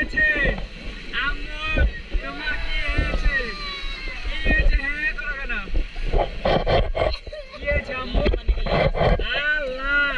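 People's voices talking and calling over small sea waves washing in the shallows, with wind buffeting the microphone.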